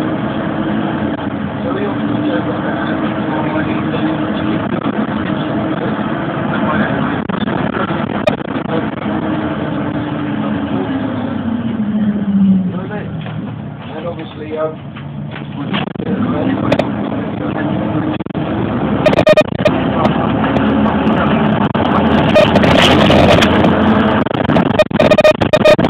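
Bus engine and drivetrain heard from inside the cabin on a phone microphone, running under way. The engine note drops in pitch about twelve seconds in as the bus slows, and it is quieter for a few seconds. From about nineteen seconds on, repeated loud knocks and rattles come from the bus body as it runs over the road surface.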